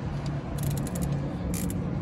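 Ratchet wrench clicking in quick runs as the bolt that holds a truck's axle locker in place is tightened up.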